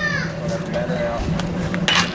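A single sharp crack of a bat hitting a pitched baseball near the end, over faint spectator voices and a shouted call that trails off in the first moments.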